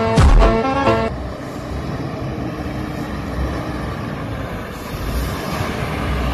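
Background music cuts off about a second in, leaving the steady rumble of a Mercedes-Benz diesel tractor unit with a heavy low-loader passing on the road, with road noise.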